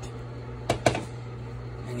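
Rice and chopped herbs being mixed by hand in a glass bowl, with two quick knocks against the bowl a little under a second in, over a steady low hum.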